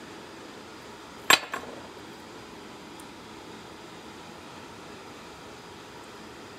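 A single sharp metallic clink about a second in, with a smaller tap right after: a piece of melted iron knocking against a steel workbench, over steady background noise.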